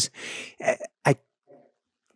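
A person's breathy exhale, then a short voiced sound and a brief click, with near quiet after.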